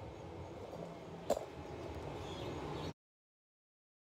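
Steady low background hum with one sharp click just over a second in; the sound then cuts off abruptly to dead silence about three seconds in.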